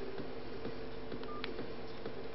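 Dual-SIM touchscreen mobile phone: a steady low electronic buzz runs throughout, and a short single keypad beep with a click sounds as the screen is tapped, about a second and a half in.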